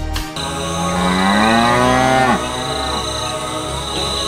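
A cow mooing once, a long call of about two seconds that rises slowly in pitch and drops off sharply at the end, with background music returning after it.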